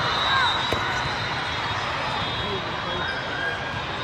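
Echoing ambience of a busy indoor volleyball hall: a steady wash of crowd chatter and shouts from many courts, with short shoe squeaks and one sharp knock of a ball less than a second in.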